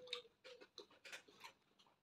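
Close-up mouth sounds of chewing soft bread: a quick series of faint, small wet clicks.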